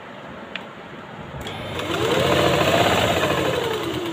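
Sewing machine stitching through satin saree fabric: it starts about a second and a half in, speeds up with a whine rising in pitch, then slows and falls in pitch as it comes to a stop at the end.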